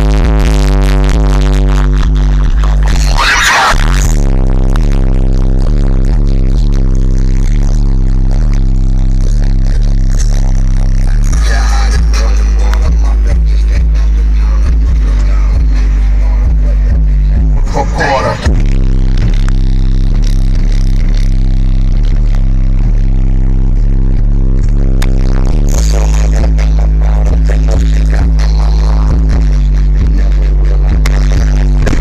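Bass-heavy electronic music played very loud on a car audio system in a bass demo, with deep sustained bass notes stepping in pitch. A few brief whooshing sweeps cut across the music.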